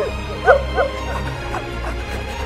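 A person whimpering and sobbing in short, high, rising-and-falling cries, overcome with emotion, over steady background music.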